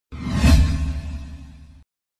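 Intro whoosh sound effect with deep bass underneath, swelling to its loudest about half a second in and fading, then cutting off abruptly just before two seconds.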